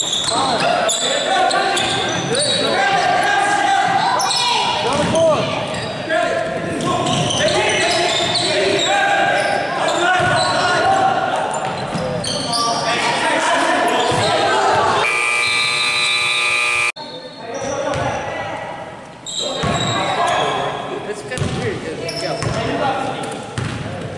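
Indoor pickup basketball game in an echoing gym: the ball bouncing on the hardwood floor amid indistinct players' shouts and court noise. About fifteen seconds in, a steady tone lasting about two seconds cuts off abruptly.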